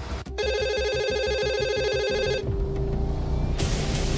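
A telephone ringing sound effect, a steady buzzing ring held for about two seconds, over background music, followed near the end by a short burst of hiss.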